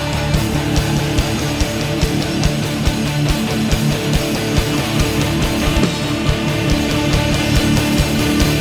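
Live band playing an instrumental passage: electric guitar over drums with a steady kick-drum beat, no voice singing.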